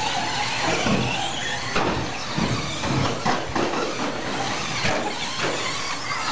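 1/10-scale 2WD short course RC trucks racing on a dirt track, their motors and tyres making a steady noisy wash, with several sharp knocks between about two and five seconds in.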